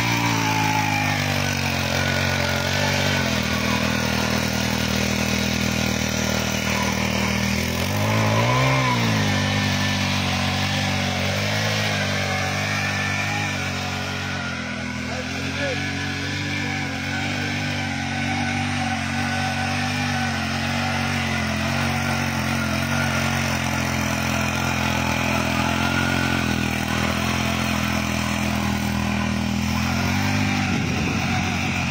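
Small 63 cc four-stroke, air-cooled mini power tiller engine running steadily under load while its tines churn grassy soil. It revs up briefly and drops back about eight seconds in.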